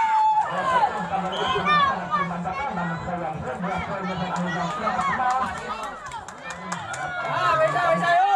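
Crowd of spectators chattering and calling out, many voices overlapping, over a steady low hum.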